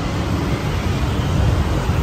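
Steady road traffic noise: a continuous low rumble and hiss with no single event standing out.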